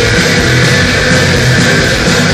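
Live rock band playing loud, with electric guitar, bass guitar and drums in a dense, unbroken wall of sound.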